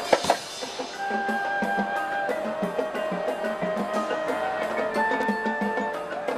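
High school marching band playing: two loud percussion hits right at the start, then held wind chords that shift every second or so over a steady pattern of percussion taps.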